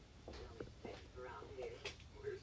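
Faint, indistinct voices, with a few light clicks, the sharpest near the end.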